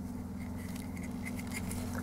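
Quiet pause holding a steady low hum and faint small clicks and rubs from a plastic action figure being handled and its joints moved.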